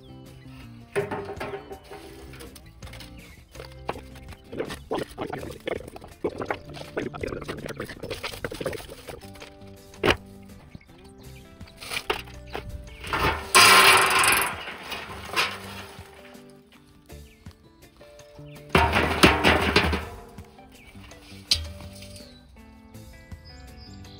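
Lumps of hardwood charcoal clattering into an empty steel drum as they are tipped out of a steel kiln barrel, in two loud pours about five seconds apart. Before them, scattered clinks of lumps being handled, with background music throughout.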